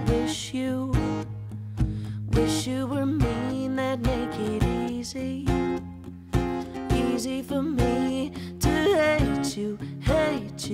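Live acoustic country song: a strummed steel-string acoustic guitar and a cajon keeping a steady beat, with a woman singing the melody at times.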